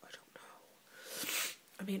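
A woman's loud unvoiced breath, a sigh-like hiss that swells and fades about a second in, after a few soft mouth clicks; she starts speaking again near the end.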